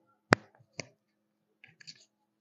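Two sharp clicks from a whiteboard marker being handled, the first the louder, followed by faint rustling near the end.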